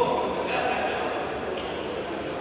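Indistinct voices and background hubbub in an indoor sports hall, with no clear words.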